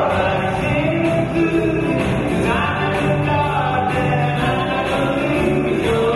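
A live country-rock band playing, with electric guitars, keyboard and bass under a male lead vocal joined by harmony voices; the recording's sound quality is poor.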